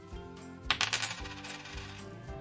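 Background music with a sudden bright jingle of coins, a cash sound effect, about two-thirds of a second in, shimmering for about a second as an on-screen price caption appears.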